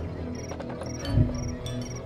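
Insects chirping in short, high, repeated bursts, several a second, over low, steady music, with a soft low thump about a second in.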